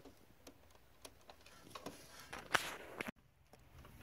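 Faint scattered clicks and a short scrape about two and a half seconds in, from a pulled plastic double-pole circuit breaker being handled at the panel.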